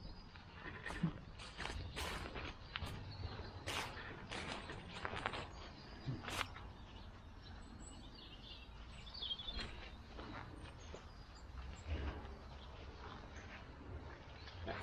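Footsteps and irregular clicks and crackles as someone walks over overgrown churchyard ground, densest in the first half, over a low steady rumble.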